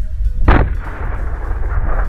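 A sutli bomb, a large twine-wrapped firecracker, exploding inside a toilet paper roll. There is a single loud bang about half a second in, followed by a long rumbling tail that dies away near the end.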